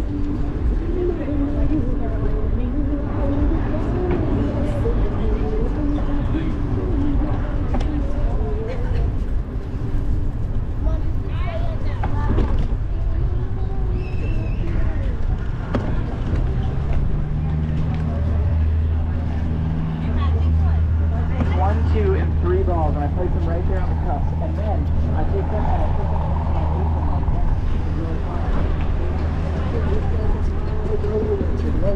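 Pedestrians' voices chatting as they are passed, over a constant low rumble of wind on the microphone. From about halfway a steady low motor hum sets in underneath.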